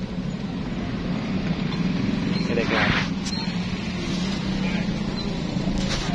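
A steady low mechanical hum, with a brief rustling burst near the middle.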